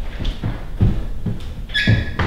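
Footsteps on a tiled bathroom floor, soft low thumps about twice a second, with a short high squeak near the end.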